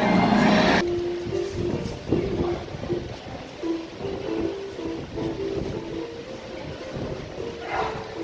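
Loud rally music and voices cut off suddenly under a second in. Then comes the noise of a Taipei Metro station, with a train running and a string of short tones stepping up and down in pitch.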